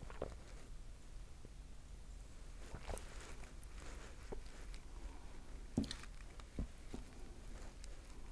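Faint mouth sounds of a man sipping and tasting beer: a sip and swallow near the start, then a few soft scattered smacks and clicks over a low room hum.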